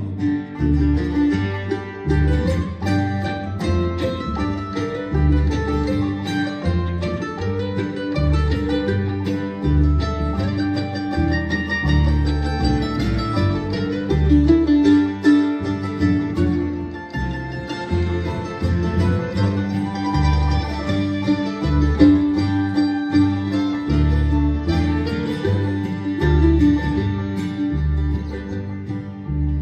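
Bluegrass band playing an instrumental break with no singing: fiddle, banjo, mandolin and acoustic guitar over a steady upright-bass pulse.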